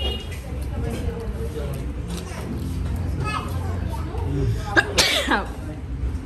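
A man's voice with a steady low hum behind it. About five seconds in comes one sudden, loud vocal burst that falls in pitch.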